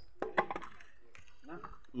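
A few sharp knocks and clicks close together, just after the start, as a large netted fish is handled on the ground. A man says a brief "Hah?" near the end.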